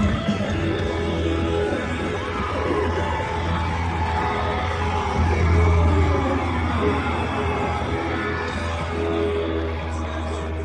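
Live rock band on a bootleg tape recording: distorted electric guitars and bass hold long sustained chords over a steady low bass note, with the crowd cheering underneath.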